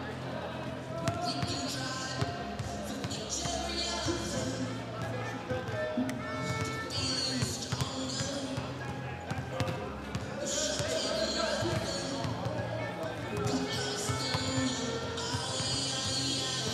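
Basketballs bouncing on the hardwood court as wheelchair basketball players dribble and shoot in warm-up, in scattered irregular thuds. Pop music with vocals plays throughout.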